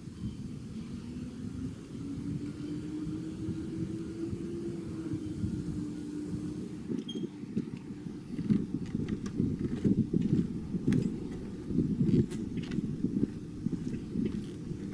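Footsteps thudding on the planks of a wooden footbridge deck, starting about halfway through and the loudest sound, over a steady low rumble. In the first few seconds a low hum rises in pitch and then holds steady.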